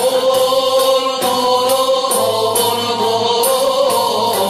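Moroccan Andalusian ensemble music: violins held upright and a cello bowing a melody with ouds, voices singing together in unison, over a regular percussion beat.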